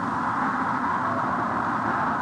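Lunar Landing Research Vehicle's jet engine and attitude/descent rockets running in a steady rushing roar as the craft hovers low, descending toward touchdown.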